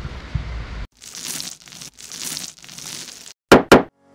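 Sound effects of an animated brush-stroke intro: three rough, hissing brush swishes of about half a second each, then two short, sharp, loud swooshes near the end.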